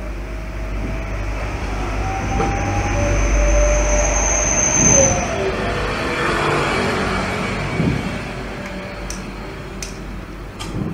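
A low rumble that builds to its loudest about four to five seconds in and then eases off, with a faint high whistling tone over its loudest part.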